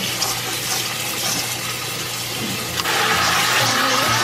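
Kitchen tap running, its stream splashing onto mushrooms in a stainless steel colander in a metal sink. About three seconds in, the splashing gets louder.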